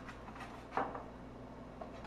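A few faint, light clicks and knocks of eggshells against one another and the metal steamer basket as eggs are settled into it. The loudest knock comes a little under a second in.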